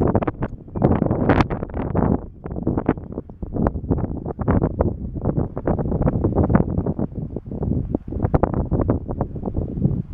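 Strong gusting wind of about 20–30 mph buffeting the camera microphone: a loud, irregular low rumble that surges and drops with each gust, with a short lull about a third of the way in.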